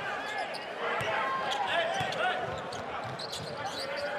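A basketball dribbled on a hardwood court, its bounces coming at an irregular pace, over the steady murmur of an arena crowd.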